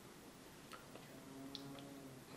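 Near silence with a few faint, light ticks in the second half, over a faint low hum.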